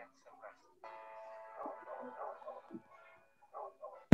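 Faint soundtrack of an animated cartoon video: a voice speaking, with background music of steady held notes coming in about a second in.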